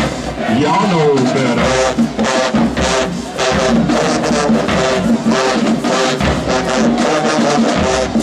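Marching band playing, saxophones and brass over a steady beat, with a swooping pitch bend in the horns about a second in.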